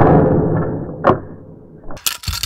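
Victor wooden snap rat trap springing shut on a pencil pressed against its bait pedal: a loud sharp snap, then a rattling ring from the wire kill bar and spring that dies away. A second sharp click comes about a second in.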